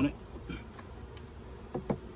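Honeybees buzzing around an opened hive, a steady hum, with two brief knocks near the end.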